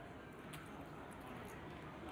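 Low, steady background hiss of a card room between commentary lines, with one faint click about half a second in.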